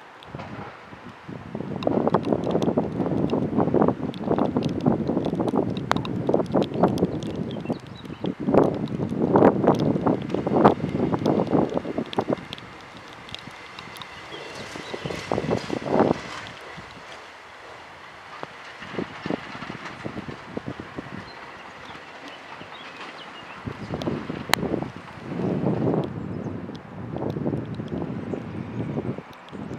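A two-car diesel railcar running past on the track, mixed with strong gusts of wind buffeting the microphone. The gusts are loudest in the first half and return near the end; in between, a faint steady whine is heard as the train passes.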